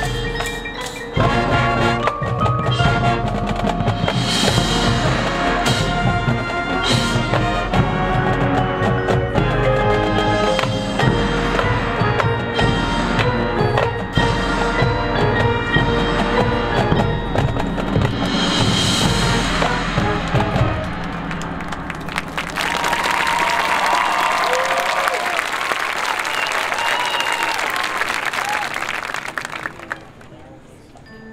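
High school marching band playing a loud, driving passage for brass, drums and front-ensemble mallet percussion, which stops about 21 seconds in. For the last several seconds a crowd applauds and cheers.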